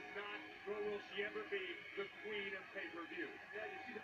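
Wrestling broadcast playing faintly from a TV or device in the room: a voice with music behind it.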